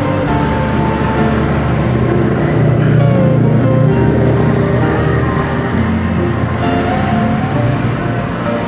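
Instrumental interlude of a Chinese pop ballad's karaoke backing track: a melody of held notes over a steady bass, with no singing.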